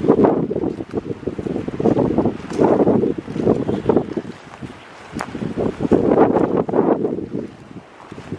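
Wind buffeting an outdoor camera microphone: a low, rumbling gust noise that swells and drops every second or two.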